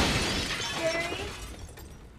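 Tail of an explosion sound effect: a crash of shattering glass and falling debris that fades away steadily over about two seconds.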